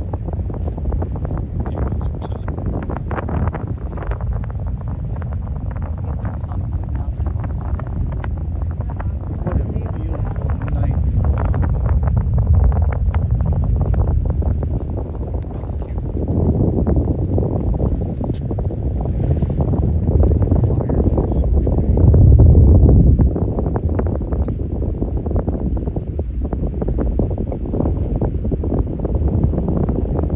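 Low rumble and crackle of a distant rocket launch, swelling about halfway through and loudest a little later.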